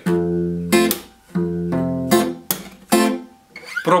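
Acoustic guitar fingerpicking an F major barre chord. A bass note is plucked on the sixth string, then the top three strings are plucked together, and the chord is cut short by a slap of the right hand. The pattern repeats twice over.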